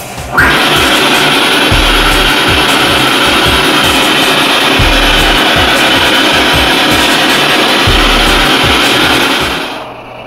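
Loud, steady static-like hiss with a deep low thud about every three seconds, fading out near the end.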